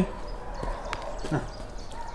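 A dog's short, low grunt that falls in pitch, about a second and a half in, with a few light clicks beforehand.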